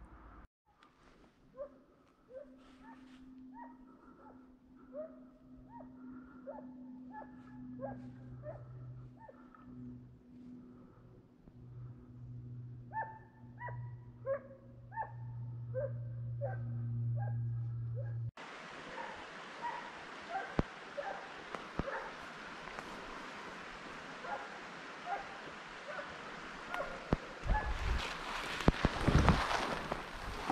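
A Halden hound baying in the distance while running a fox track: a long series of short yelps that rise in pitch, about two a second, over a low steady hum. Near the end, loud noises close by.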